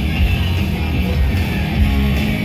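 Heavy metal band playing live: distorted electric guitars, bass and drums at full volume.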